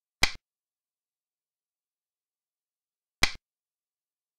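Two short, sharp clacks about three seconds apart: the move sound effect of a xiangqi (Chinese chess) replay as each piece lands on its new point.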